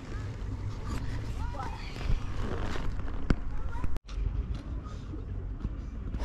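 Honda X4 motorcycle's inline-four engine idling at standstill, a steady low rumble, with faint voices in the background. The sound drops out for an instant about four seconds in.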